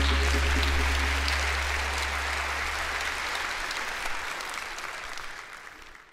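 Applause from a small congregation over the worship band's last low held note, which dies away within the first few seconds. The clapping fades out near the end.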